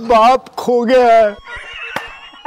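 A man's exaggerated, quavering wail: two long drawn-out cries with a shaking pitch, in the first second and a half.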